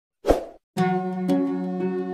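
A single short sound effect about a quarter second in, starting sharply and dying away within a few tenths of a second, then background music with sustained notes that starts just before the first second.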